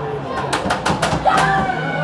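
Rink-side ice hockey play: a quick run of sharp clacks from sticks and puck on the ice, starting about half a second in, over arena crowd voices and a steady hum.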